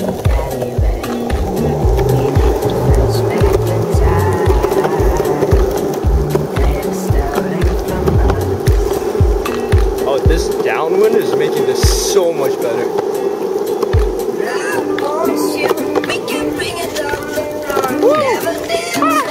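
Skateboard wheels rolling steadily over an asphalt path, with music playing over the rolling sound.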